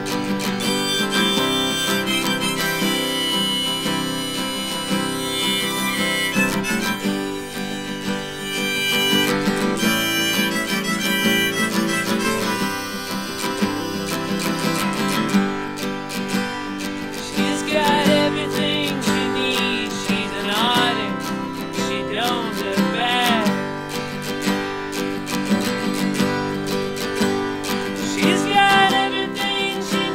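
Harmonica in a neck rack played over a strummed acoustic guitar, an instrumental passage with no singing. In the second half the harmonica's notes bend and waver in pitch.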